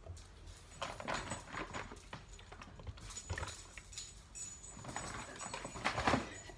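Groceries being unpacked by hand: paper-carton boxes of chicken broth set down on a stone kitchen counter and a paper grocery bag rustling, heard as a string of light knocks and rustles.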